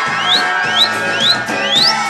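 Live conjunto band playing: button accordion, bajo sexto, electric bass and drums. Over the music come five short rising whistles, about two a second, whistled in time with the tune.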